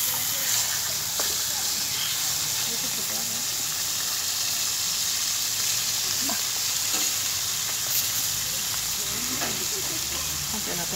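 Beef steaks sizzling steadily on a hot flat-top griddle and in an oiled frying pan, with a few faint clicks now and then.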